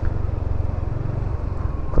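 Motor scooter riding along at low speed: a steady engine hum mixed with wind rumble on the rider's camera microphone.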